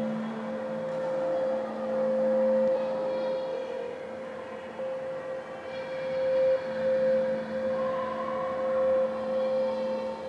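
Electronic ambient drone music: a steady high sustained tone over a lower drone. The lower drone drops out about a third of the way in and returns after about seven seconds, with fainter tones shifting above.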